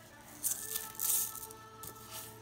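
Dry uncooked rice rattling in a plastic storage tub as a small plastic cup is scooped through it, in two grainy bursts about half a second and a second in.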